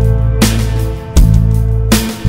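Instrumental band music: sustained low bass notes under guitar, with a strong beat hit about every three-quarters of a second.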